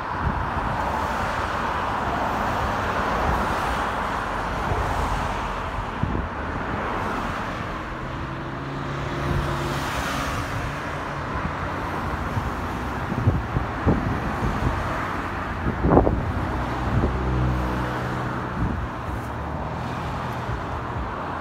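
Road traffic: cars running along a street, a steady wash of tyre and engine noise that swells as a vehicle passes about halfway through. A few sharp knocks come in the second half, the loudest about 16 s in.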